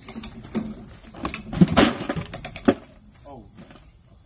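A dead wild hog being put into a plastic ice cooler, with a cluster of knocks and clatter about a second in.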